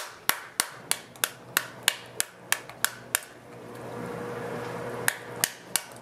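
Wooden spoon whacking the skin of a halved pomegranate held in the palm, about three sharp knocks a second, knocking the seeds loose. The strikes pause for about two seconds in the middle, then resume.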